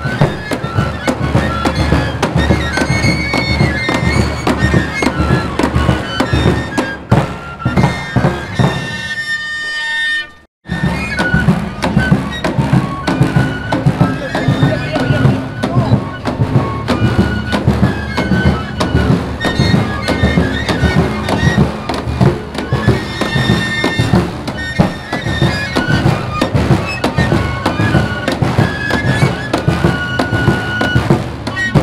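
Andean caja y roncadora music: several players each blow a long three-hole flute with one hand and beat a large double-headed caja drum with a stick. The high flute melody plays over a steady drum beat. It breaks off for an instant about ten seconds in, then carries on.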